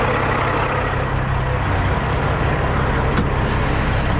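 Diesel engine of a heavy truck idling steadily, with a single sharp click about three seconds in.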